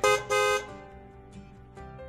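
Two toots of a vehicle horn sound effect, a short one and then a longer one, over quieter intro music that carries on after them.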